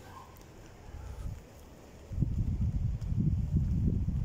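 Wind buffeting the camera microphone as a low, uneven rumble that starts about two seconds in, after a quiet stretch.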